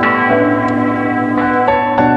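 Church tower bells ringing: struck notes of several pitches overlapping and ringing on. Fresh strokes come at the start and again about a second and a half in.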